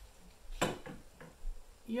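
Spirit level knocking against a metal TV wall-mount bracket as it is set along the top edge: one sharp knock about half a second in, then a couple of lighter knocks.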